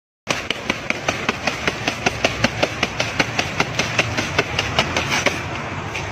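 Rapid, evenly spaced knocking, about four to five sharp knocks a second, over a steady rumble. It starts and stops abruptly.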